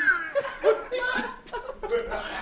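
A man laughing in short, broken chuckles.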